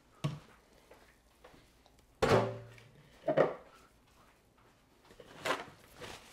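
A silicone spatula scraping sticky ground meat out of a plastic food processor bowl, with a few sharp knocks against the bowl. The loudest knock, a little over two seconds in, rings briefly.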